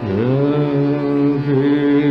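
A male Hindustani classical voice enters on a low note, slides up and holds one long sung note over harmonium accompaniment, in a slow vilambit rendering of Raag Marwa.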